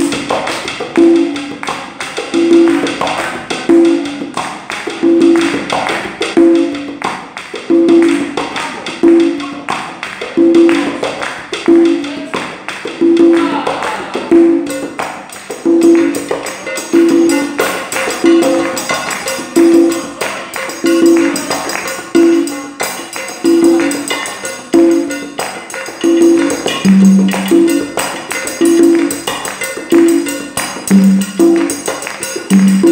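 Salsa percussion ensemble playing a steady groove: congas play the tumbao, a pair of open tones about every 1.3 seconds, with a lower drum tone twice near the end. Sticks click the cáscara pattern over it, along with the clave.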